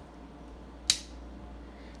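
A single sharp click from the plastic syringe being handled, about halfway through, over a faint steady low hum.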